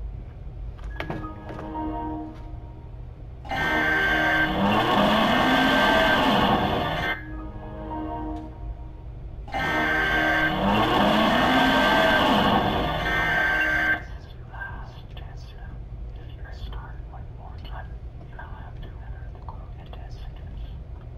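A loud, distorted, voice-like sound effect that blasts twice, each time for about three to four seconds, over quieter background music.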